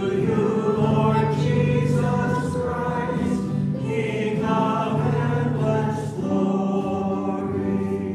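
Choir singing in sustained, slowly changing chords, a sung Gospel acclamation at Mass.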